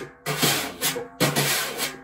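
Wire jazz drum brushes sweeping in half circles across a coated drum head: a run of swishes about a second long each, with brief gaps between them.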